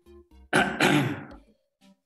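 A man clearing his throat, two rough bursts in quick succession about half a second in, with faint music playing underneath.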